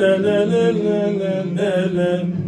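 A man singing a Smyrna rebetiko song without words in this stretch, holding long, ornamented vowel notes that waver slightly in pitch and shift to a new note about halfway through.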